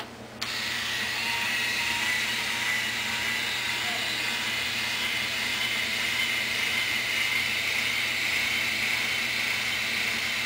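InStyler rotating hot iron's small motor whirring as its barrel spins through the hair, with a steady high whine. It switches on about half a second in and holds steady.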